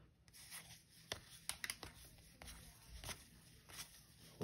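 Faint soft ticks and rubbing of cardboard trading cards being slid off a stack one at a time by hand.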